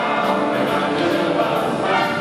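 A male vocal group singing together into microphones over a big band's accompaniment, with a steady high ticking beat running through it.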